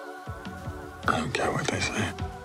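Film-trailer music with sustained tones, low notes coming in shortly after the start. Soft, whispered dialogue sits over it from about a second in.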